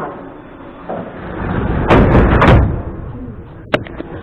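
Moscow Metro train's sliding doors closing: a rush of sliding noise builds from about a second in and ends in two loud bangs as the leaves slam shut, followed by a short sharp click near the end.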